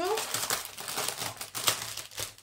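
Clear plastic bag crinkling and crackling as hands press and handle the piece of embroidery fabric packed inside it, with one sharper crackle about three quarters of the way through.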